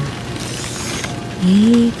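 A hand rustles and handles the grapevine foliage and a bunch of grapes over a steady hiss of rain. A woman's brief "ee, ko" comes near the end.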